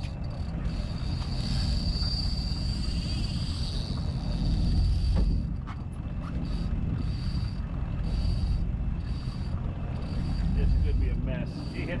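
Fishing reel whining high and thin as a fish fights on the line: one long steady whine for about the first five seconds, then short whines coming and going about every three-quarters of a second. Underneath is a loud low rumble from the boat and the wind.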